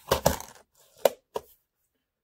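Clear plastic parts organizer box being handled and shut: a short rattle of plastic, then two sharp plastic clicks a third of a second apart about a second in.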